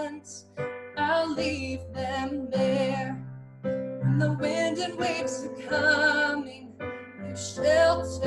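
A woman singing a worship song in phrases with vibrato, accompanying herself on an electronic keyboard playing held piano chords.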